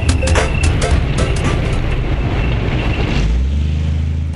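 A tracked main battle tank of about 45 tonnes drives on asphalt, its engine and tracks making a steady heavy rumble. About three seconds in it settles into a steady low drone. Music fades out in the first half second.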